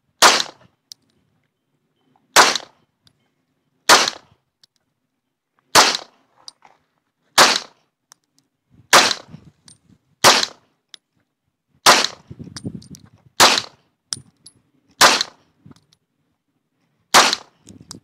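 Semi-automatic pistol fired in slow aimed fire: eleven single shots, about one every one and a half to two seconds, each a sharp crack. Faint metallic clinks come between some of the shots.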